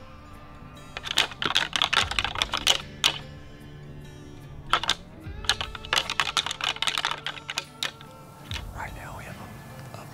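Two bursts of rapid, dense clicking and clattering, each lasting about two seconds, over steady background music.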